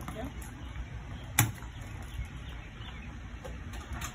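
A single sharp click about a second and a half in, from the golf cart's controls as a start is tried, over a low steady rumble. The engine is not yet running.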